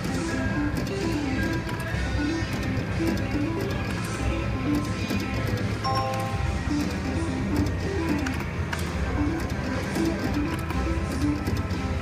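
Slot machine game music: a bouncing electronic tune of short stepped notes over a steady low casino hum, with a brief chime about six seconds in as a small win of 10 credits registers.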